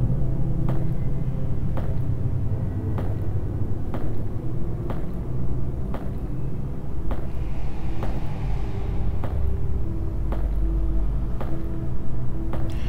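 Dark horror-film soundtrack drone: a steady low rumble with a sharp click repeating about every three-quarters of a second and faint held tones over it.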